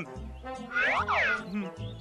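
Cartoon background music with a repeating low bass note. About a second in, a comic boing-like sound effect swoops down in pitch and back up.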